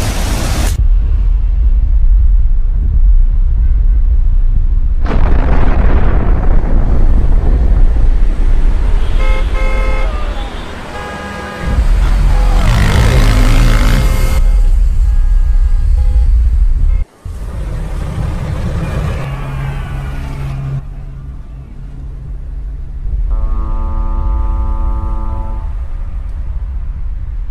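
Layered film sound effects: a heavy, continuous low rumble with car horns honking over it in the middle, and a long, steady horn blast near the end.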